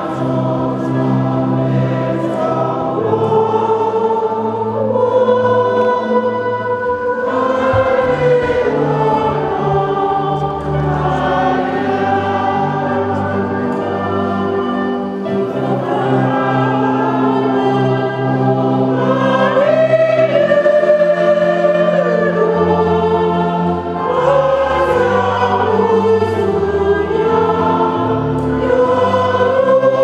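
Many voices singing a slow hymn together, with long held notes over a steady low accompaniment.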